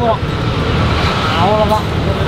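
Steady low rumble of street traffic with background crowd noise, and a voice heard briefly about one and a half seconds in.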